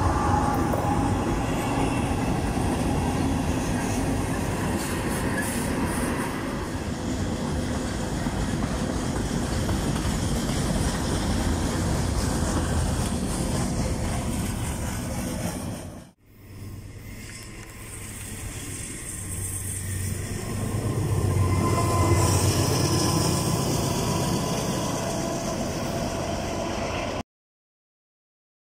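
A diesel freight train passing close by: a KCS GE ES44AC locomotive goes by, then its freight cars roll past in a steady rumble and rattle. After an abrupt cut about sixteen seconds in, another string of freight cars rolls past, growing louder and then easing off.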